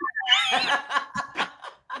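People laughing together over a video call: choppy bursts of laughter with short breaks.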